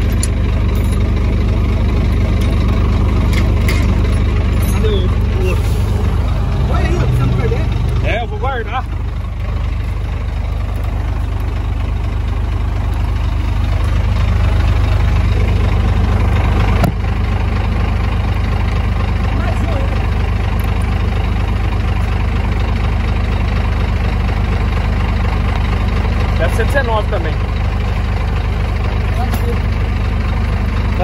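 A truck engine idling with a steady low hum. There is a single sharp click about seventeen seconds in.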